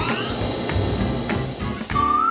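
Electric train pulling away: its motor whine rises in pitch and then holds steady, over background music.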